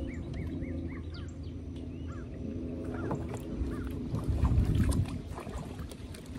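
A bird calling a quick run of arched chirps, about three a second, through the first second, then scattered further calls, over a steady low hum. A low rumble comes about four and a half seconds in.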